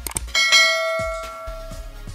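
Notification-bell sound effect for a subscribe animation: two quick clicks, then a single bright bell chime about a third of a second in that rings and fades away over about a second and a half.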